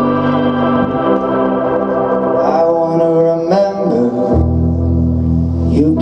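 Live band playing an instrumental passage: sustained organ-toned keyboard chords over a bass line, the chords changing every second or so. A note bends in pitch about three and a half seconds in, a heavier bass note comes in soon after, and there are a couple of light cymbal hits.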